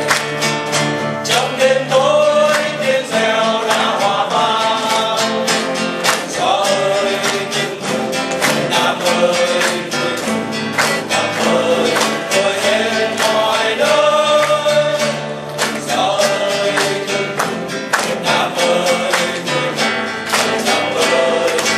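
A small group of men singing a Vietnamese du ca song together, accompanied by acoustic guitar, with long held notes in the melody.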